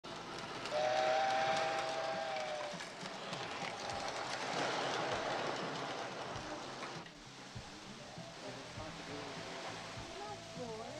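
Model electric train sounding a steady two-note horn for about two seconds, then running along its track with a rumbling clatter that drops away suddenly about seven seconds in.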